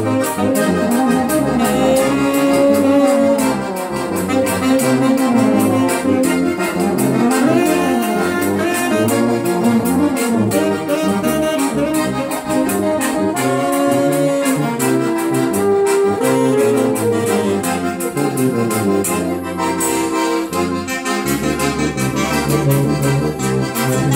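A small live instrumental group playing a lively tune: euphonium and alto saxophone carry the melody with accordion accompaniment over a steady beat.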